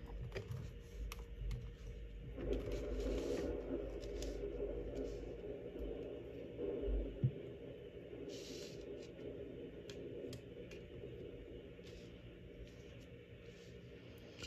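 Tarot cards being slid across and set down on a woven placemat: quiet rustling and scraping with a few light taps.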